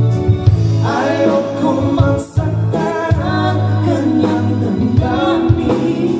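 A man and a woman singing a duet with a live band, over a steady bass line and drums.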